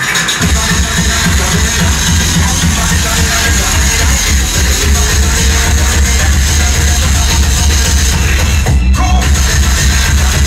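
Loud breakcore electronic music from a DJ set, played over a club sound system, with heavy bass. About nine seconds in the treble briefly drops out while the bass carries on.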